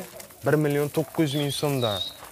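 A man's low voice talking in a few short phrases, with a faint high chirp near the end.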